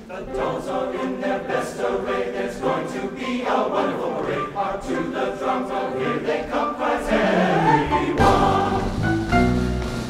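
Large men's chorus singing with musical accompaniment. About seven seconds in the music slides upward in pitch, and a fuller, deeper accompaniment comes in.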